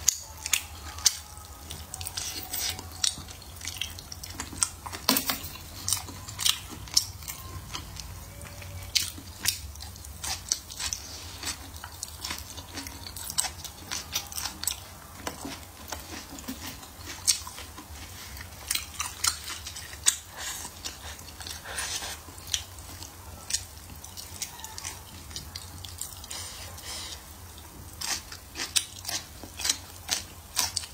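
Close-miked chewing and mouth sounds of a person eating braised eggplant, meat and blistered green peppers, with many short sharp clicks and smacks throughout. A faint steady low hum lies underneath.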